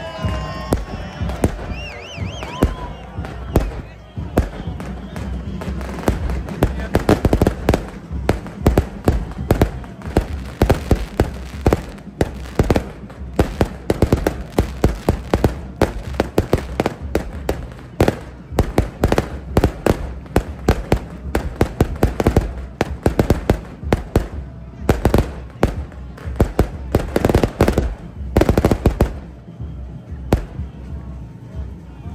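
A fireworks display going off overhead: a dense, irregular string of sharp bangs and crackles that starts a few seconds in and keeps going.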